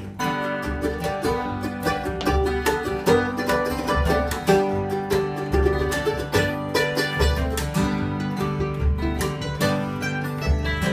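Acoustic string band of mandolin, upright bass and two acoustic guitars playing an instrumental passage without singing, in a country-bluegrass style. Many quick plucked notes ring over slow, deep upright bass notes.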